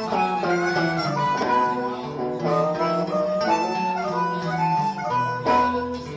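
Live blues band, led by a blues harmonica played into a vocal microphone carrying a melodic line, over electric guitar and the rest of the band.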